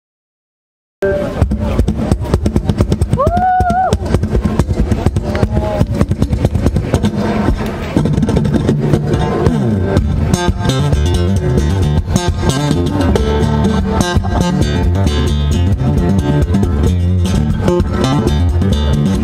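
Martin OMCPA-1 acoustic-electric guitar played percussive fingerstyle, with slapped and tapped body hits and a bass line under the melody, amplified through a small amp. It starts abruptly about a second in, out of silence.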